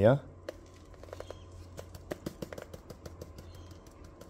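Powdered rust and stain cleaner shaken from a plastic tub into a plastic container of liquid: a scatter of faint, irregular small ticks, several a second.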